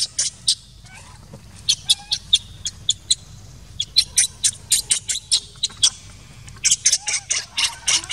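A bird calling in runs of short, high, sharp chirps, about five or six a second, in several bursts with brief pauses between them.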